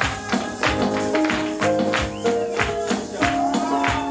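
Church gospel music: a tambourine struck on a steady beat of about four strokes a second under sustained chords.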